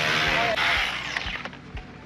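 Handheld power chisel running as it chips into compacted gravel, a steady buzzing hum that dies away about a second in when the trigger is let go.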